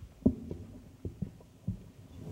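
A few soft, low thuds and knocks at irregular intervals, about five in two seconds, over faint room noise.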